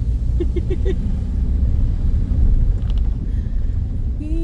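A car rumbling at low speed over a paving-stone street, heard from inside the cabin: steady low engine and tyre rumble. A few short pitched sounds come about half a second in.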